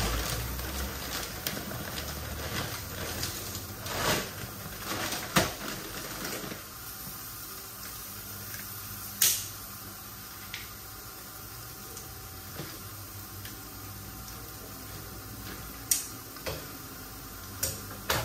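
Dry pasta rattling and rustling as it is poured out of its plastic bag, for about the first six seconds. After that a quieter steady kitchen background with a few isolated sharp clicks from kitchen tongs and scissors being handled.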